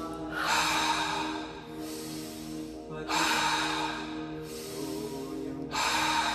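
Deep, slow breathing for breathwork: three long, loud breaths about three seconds apart, over sustained ambient music with held tones.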